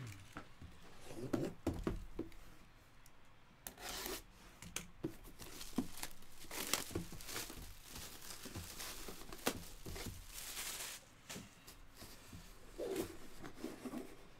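A cardboard box being slid around and its lid opened by hand: irregular scrapes, taps and rustling with tearing-like crinkles.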